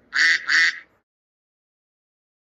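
A duck quacking twice in quick succession, two short loud quacks within the first second.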